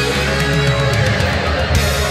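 Hard rock band recording in an instrumental stretch without vocals: electric guitar over bass and drums, with steady drum hits.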